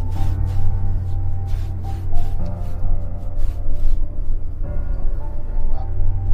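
Background music: sustained synth notes over a heavy, steady bass, with a light ticking beat in the first half that fades out.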